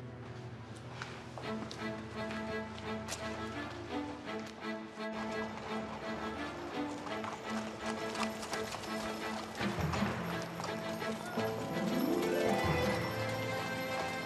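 Background score of held notes with a rising swell near the end, over a steady clatter of a horse's hooves clip-clopping on a street.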